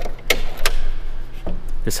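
Inner gate of a GMC MultiPro tailgate being unlatched and dropped down: two sharp clicks about a third of a second apart.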